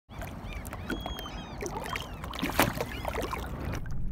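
Small choppy waves lapping and splashing, many short splashes and gurgles over a low steady rumble, with a louder splash about two and a half seconds in.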